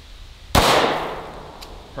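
A single .357 SIG pistol shot from a Glock 23 with a conversion barrel: one sharp report about half a second in that echoes and fades away over roughly a second.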